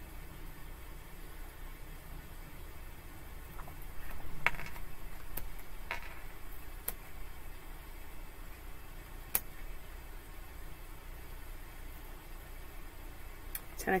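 Tarot cards being handled and laid out on a table: a few soft clicks and card slaps between about four and seven seconds in, and one sharp tick a little past the middle, over a steady low room hum.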